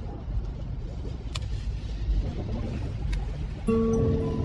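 Vinyl LP playing the quiet groove between tracks: low rumble and surface noise with a couple of sharp clicks. Near the end the next song starts with sustained instrument notes.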